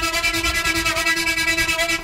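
A sustained synthesizer note from Xfer Serum playing a wavetable made from an imported picture, frequency-modulated from oscillator A. It holds one pitch, rich in overtones, with a fast, even fluttering pulse.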